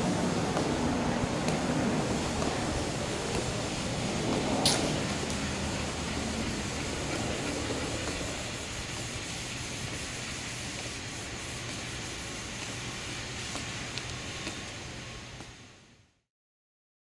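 Steady outdoor background noise, a low rumble with hiss, easing off gradually, with one sharp click about five seconds in; it fades out near the end.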